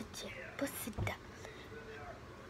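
Whispering voices, with a soft thump about a second in.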